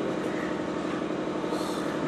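A steady background hum with a faint held tone in it, even and unchanging.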